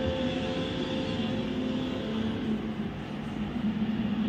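A steady low hum that holds an even pitch, with no parrot calls standing out.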